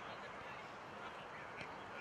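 Faint, indistinct distant voices calling out over steady background noise.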